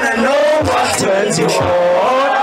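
A rapper's voice amplified through a handheld microphone and PA, rapping over a hip-hop beat with low drum thumps about twice a second.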